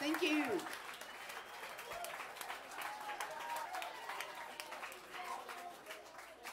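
Club audience applauding as a song ends, with a single shout at the start and crowd voices under the clapping, which slowly thins out.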